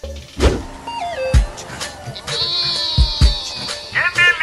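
Comedy sound-effect sting laid over music. A sweeping hit comes near the start, then a stepped falling tone ends in a deep bass hit about a second in. A high wavering tone follows, with two quick deep hits near the end.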